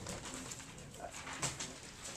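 Faint classroom room noise: scattered soft knocks and rustles, the most distinct about one and a half seconds in, with brief faint low hum-like tones.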